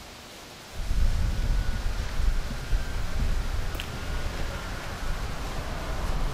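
Wind buffeting the camera microphone: a loud, uneven low rumble that starts suddenly about a second in, over faint steady hiss.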